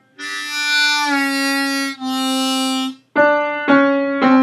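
Diatonic harmonica in C playing the drawn note on hole 1 (D), whose pitch drops slightly about a second in as it is bent down toward C sharp. After a short break a second held harmonica note follows, then near the end two piano notes are struck and fade.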